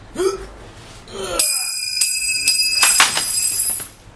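A short gasping cry, then a bright metallic ringing like a bell, struck about four times roughly half a second apart and ringing on for about two and a half seconds before it cuts off.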